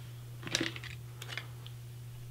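A few light clicks and taps from makeup tools being handled, a brush against a palette, in two small clusters about half a second in and just past one second, over a faint steady low hum.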